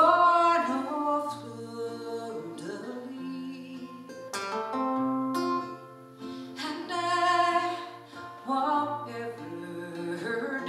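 Live band music: guitars, electric bass and mandolin playing a song with voices singing over them.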